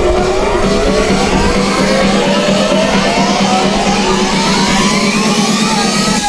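Electronic dance-music riser played through the stage PA: a series of overlapping upward sweeps, each climbing for about a second, over a steady low drone.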